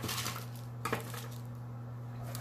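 Light handling noise at a table: a faint rustle and one small click a little under a second in, over a steady low hum.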